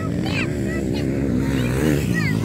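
Dirt bike engines running out of sight behind the jump, their pitch wavering up and down with the throttle. Short high chirps sound over them.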